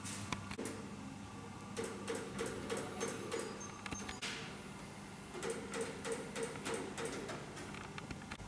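Workshop room sound: a steady low hum with many irregular light clicks and knocks, and a brief falling hiss about halfway through.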